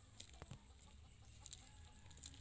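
Faint scattered clicks and ticks of dried maize kernels being rubbed off the cob by hand and dropping onto the pile of loose kernels, with a single short knock about halfway through.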